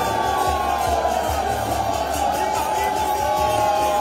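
Aarti music at a Jagannath chariot, with a steady beat and long held tones, over a dense crowd of devotees.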